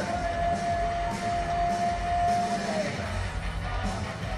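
Loud rock karaoke: a backing track with guitar and a low beat, carrying one long held note for about two and a half seconds that then slides down.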